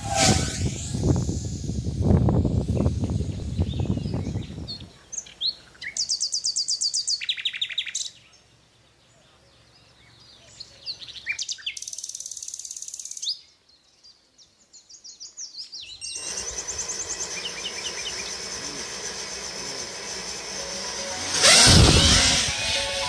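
Wind buffeting the microphone for the first few seconds, then songbirds chirping and trilling in short rapid bursts with quiet gaps between them. A steady hiss follows, and just before the end comes a loud rising whoosh.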